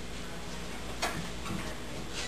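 Quiet meeting-room tone with a single sharp click about a second in and a few faint ticks after it, like a small object or paper being handled at the table.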